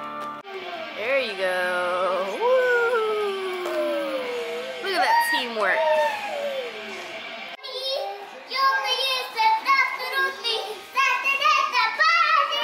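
Young children's voices, gliding up and down in sing-song calls and squeals, with music. After a sudden cut about halfway through, a song with a steady rhythm.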